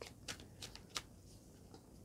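Tarot cards being handled and shuffled in the hand: a few soft, quiet card flicks and clicks, most of them in the first second.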